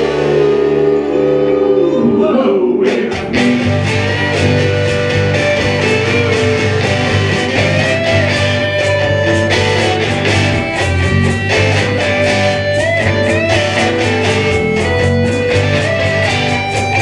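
Small live band playing, led by electric guitar: a held chord dies away about three seconds in and the band picks up a steady rhythm, with the guitar bending notes over it.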